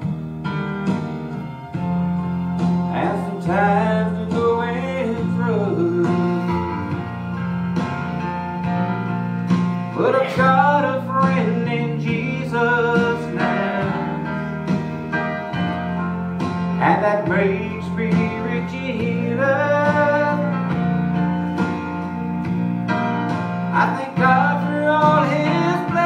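Country-gospel backing music with a steady bass line, guitar and a gliding lead melody in phrases.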